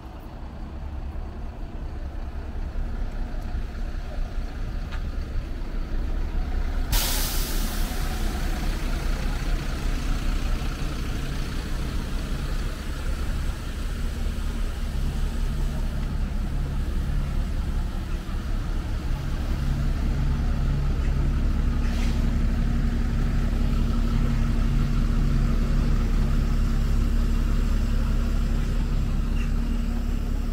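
City bus engines idling close by with a steady low rumble. About seven seconds in comes a loud hiss of released air from a bus's air brakes, fading over a second or two, and a shorter hiss later. Toward the end the engine note grows louder as a bus moves off.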